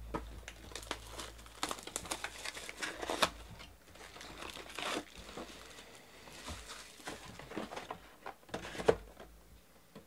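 Clear plastic shrink wrap being torn and crinkled off a sports-card hobby box as it is unwrapped and opened: a run of irregular crackles, with a few sharper snaps about three seconds in and near the end.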